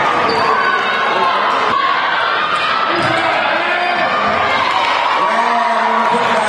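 Game sound from a basketball gym: many indistinct voices from the crowd and players, with a basketball bouncing on the hardwood court.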